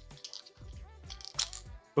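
Quiet background music. A little past halfway there is a brief scraping sound as the plastic cover is twisted off the stainless-steel hydrovac nozzle.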